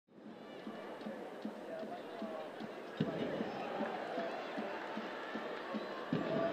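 Stadium crowd noise at a women's soccer match: a mass of voices with regular low thumps running through it. It fades in at the start and gets louder about halfway through.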